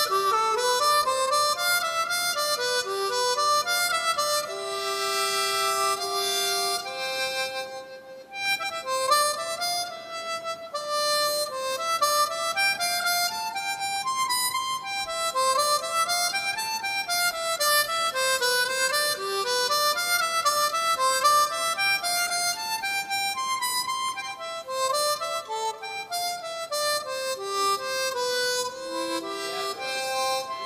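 Solo harmonica playing fast running passages of notes that climb and fall, with a long held note about four to seven seconds in and a brief break near eight seconds.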